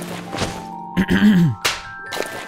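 Cartoon sound effects of rummaging: four short thunks, with a man's strained grunt about a second in whose pitch rises slightly and then drops, over steady background music.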